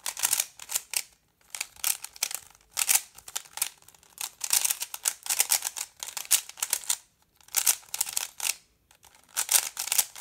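A plastic speedcube being turned fast by hand: rapid runs of clicking and clacking layer turns in bursts, with brief pauses between them.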